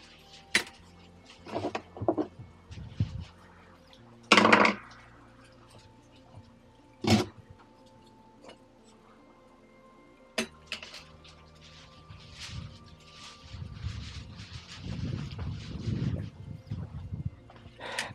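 A screwdriver and loose parts clicking and knocking as the tub hub of a Whirlpool Cabrio washer is unscrewed and lifted off its shaft. There are scattered light clicks and a few sharp knocks, then a low rustle of handling near the end.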